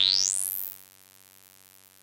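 Low synthesizer drone through a Threetom Steve's MS-22 dual filter in linked band-pass mode: the resonant peak sweeps steadily upward into a high whistle. The sound then fades out about a second in.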